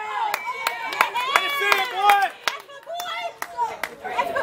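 Spectators at a baseball game shouting and cheering, with scattered hand claps, while a batter runs out a hit to first base.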